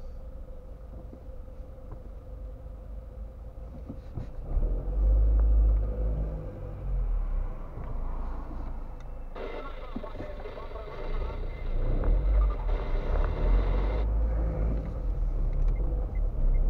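Engine and road rumble inside a car's cabin, picked up by a dashcam as the car creeps forward in traffic; the low rumble gets louder about four seconds in and again near the end.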